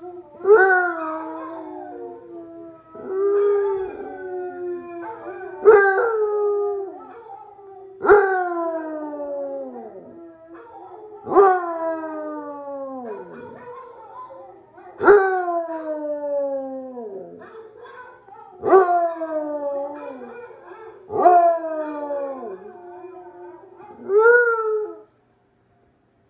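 Basset hound howling again and again: about nine howls, each starting sharply and sliding down in pitch, every few seconds, over a steady lower tone. The sound cuts off suddenly near the end.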